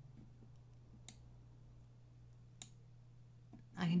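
Computer mouse clicking: two sharp single clicks about a second and a half apart, with a few fainter ones, over a faint steady low hum.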